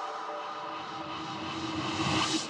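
Background electronic music in a beatless break: a soft swelling whoosh with a few held tones, growing steadily louder.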